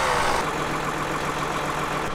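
A motor running steadily at one constant low pitch, with no change in speed.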